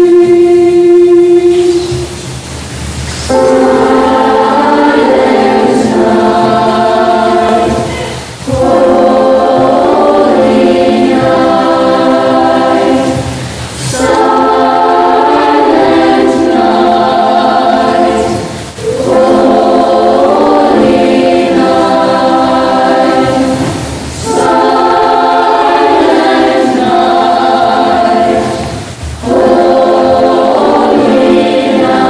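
Children's choir singing together in phrases of about five seconds, with brief dips in level between phrases.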